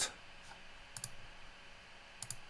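A few faint computer mouse clicks, a pair of them about a second in.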